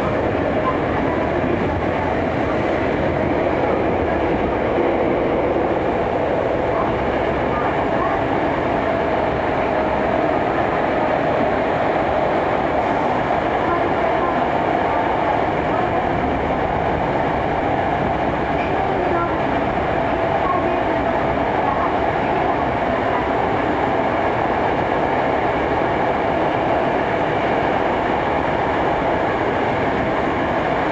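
Hankyu 7300 series commuter train running through a subway tunnel, heard from inside the car: a steady, loud running rumble of wheels on rail, with a faint steady hum.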